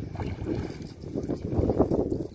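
Water sloshing and splashing around a person's legs as they wade through knee-deep lake water, in uneven surges that grow louder in the second half.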